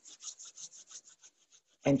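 Two people briskly rubbing their palms together, a quick run of rasping skin-on-skin strokes, about six a second, that fade out near the end. This is the yoga palming step: warming the hands by friction before cupping them over the eyes.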